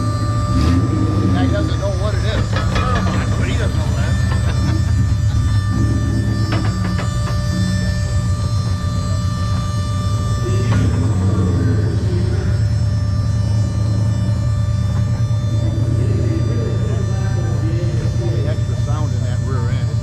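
Drag race car's engine idling with a steady low rumble as the car rolls up to the starting line and stages.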